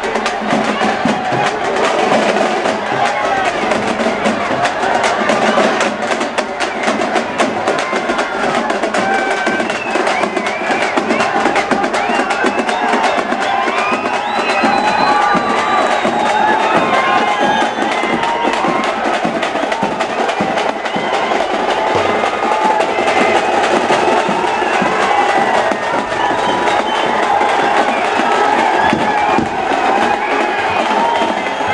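Street-procession crowd shouting and cheering over fast, continuous drumming.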